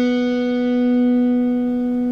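Open B string of a Telecaster electric guitar ringing as one sustained note, picked just before and held steady.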